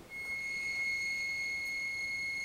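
Electric bead roller driven by twin Toylander ride-on car motors, running in reverse with a steady high-pitched whine that holds one pitch throughout.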